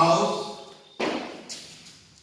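A man's voice echoing in a bare classroom, with chalk tapping and scraping on a blackboard as he writes; a short high scrape comes about a second and a half in.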